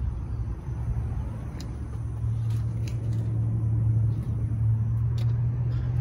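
A steady low engine hum, like a car idling close by, with a few faint clicks over it.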